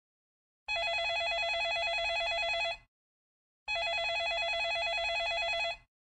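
Telephone ringing sound effect: two rings of about two seconds each, a second apart, each a fast warbling trill.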